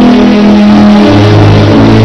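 Live church band playing loud held chords, with a deep bass note coming in about a second in.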